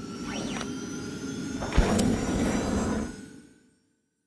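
Logo sting sound effect: a swelling whoosh with sweeping pitch glides, a sharp hit just under two seconds in, then a sustained shimmering wash that fades out near the end.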